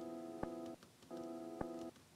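The faint tail of a chopped piano chord sample, soloed and played twice: a steady held chord with a click partway through each pass, stopping suddenly.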